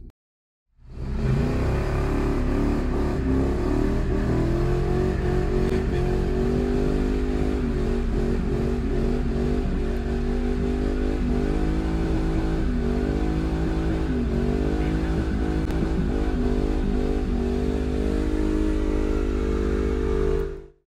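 A car engine held at high revs during a burnout, starting about a second in. The revs waver and dip briefly several times.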